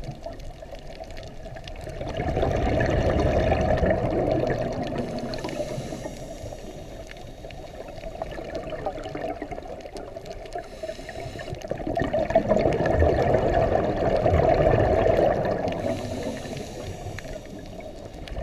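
Scuba diver breathing through a regulator underwater: two long bubbling exhalations, about ten seconds apart, with quieter hiss between them.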